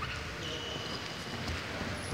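Sports hall room noise with faint shuffling steps and light thuds of wrestlers moving on the mats. A faint thin high tone sounds from about half a second in until near the end.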